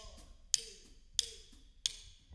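Drumsticks clicked together in a steady count-in, evenly spaced sharp clicks about two-thirds of a second apart, setting the tempo for the band to come in.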